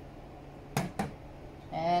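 Two sharp knocks about a quarter second apart, as of a bottle or dish set down on a stainless steel counter, over a faint steady hum.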